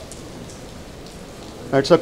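Steady hiss of rain, with a man starting to speak near the end.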